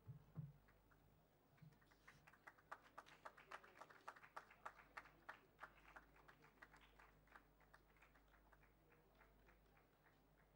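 Near silence with faint, scattered hand claps, about three a second, from about two seconds in, thinning out after about eight seconds.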